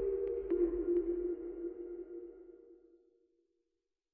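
Short electronic closing music sting: a held low synth tone with a few light ticks in the first second, fading out over about three seconds.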